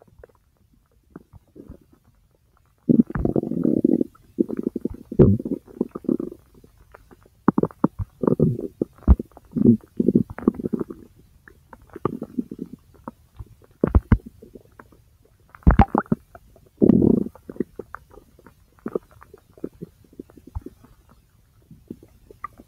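Bowel sounds from a person's large intestine: irregular gurgles and short pops in bursts with brief pauses, starting about three seconds in and lighter over the last few seconds.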